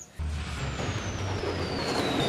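A whooshing transition sound effect: a rushing noise over a low rumble, with a whistle gliding steadily down in pitch, starting sharply and cut off abruptly.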